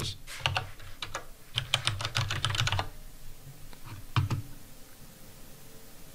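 Typing on a computer keyboard: a quick run of keystrokes over the first three seconds, then a single separate key press about four seconds in.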